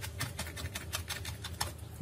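A knife chopping fresh rosemary and thyme on a wooden cutting board: quick, even, light taps, about seven a second.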